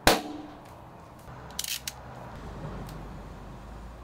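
A sharp slap as the shrink-wrapped LP sleeve is set down flat on a hard surface, with a short ringing tail. About a second and a half in comes a brief scratchy crackle of handling noise.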